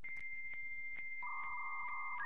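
Synthesized electronic beep tones: a steady high tone with faint clicks over it, joined a little past halfway by a second, lower and rougher tone.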